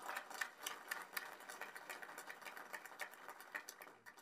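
Audience applauding, a dense patter of many hands clapping that thins out and dies away near the end.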